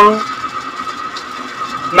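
The end of a drawn-out spoken "Hello" just after the start, then a steady high-pitched whine over a faint hiss until the voice returns at the end.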